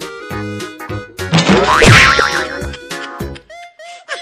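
Comic background music with cartoon sound effects: springy, sliding tones, loudest a little before halfway through, and a few short falling notes near the end.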